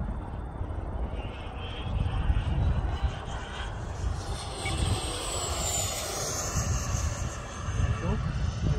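Black Horse Viper XL RC jet's 100 mm Wemotec electric ducted fan flying past: a rushing whine that builds over the first few seconds, peaks just past the middle, and drops in pitch as it goes by. Wind buffets the microphone with a low rumble throughout.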